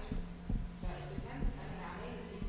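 Faint steady low hum with a few soft, dull low thumps.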